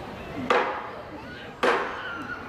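Two sharp hammer strikes about a second apart, each with a short ringing decay.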